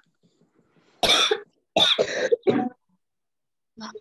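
A person coughing three times in quick succession, about a second in: loud, harsh bursts.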